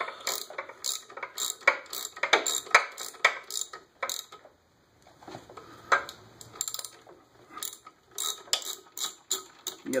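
A wrench turning a starter bolt into the back of a Ford Model A flywheel to press it off its dowel pins, clicking in short irregular runs with a brief pause a little before the middle.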